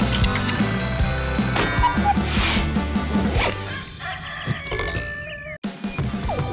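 Background music with a steady beat; it thins out about four seconds in and stops for a moment near the end before starting again.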